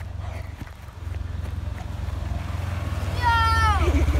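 Polaris side-by-side utility vehicle's engine running with a low pulsing rumble that grows louder as the camera reaches it. About three seconds in, a voice gives one long cry that falls in pitch.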